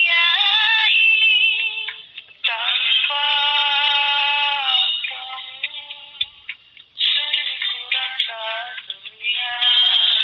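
A high voice singing a dangdut melody, with long held notes and curling pitch bends, in phrases broken by a short pause a little past the middle.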